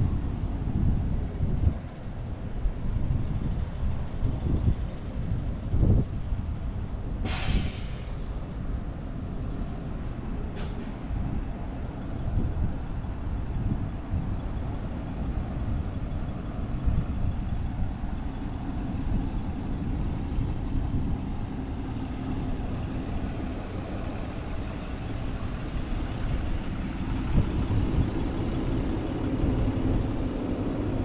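Road traffic with a city bus's engine drawing nearer and passing close near the end, over a steady low rumble. About seven seconds in there is a short hiss of air brakes.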